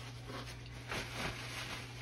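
Quiet room with a steady low electrical hum; about a second in, a man chewing a bite of sandwich and giving a faint low murmur.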